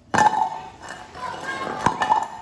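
Steel suspension control arms set down on a tiled floor: metal clanking and clinking with a brief ringing. A sharp strike comes near the end.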